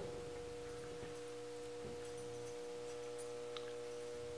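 Faint steady hum on a single tone, with a light tick about three and a half seconds in.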